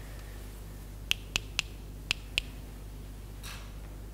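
Five sharp clicks in quick, uneven succession over about a second and a half, followed by a brief faint scrape.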